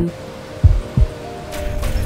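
A single heartbeat, lub-dub: two low thumps about a third of a second apart, over soft music with steady held tones.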